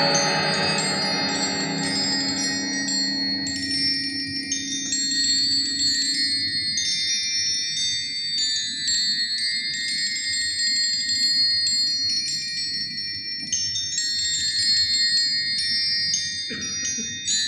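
Small tuned metal percussion struck with mallets: high, bell-like notes ring out one at a time in a slow, sparse sequence. Lower sustained tones die away in the first few seconds.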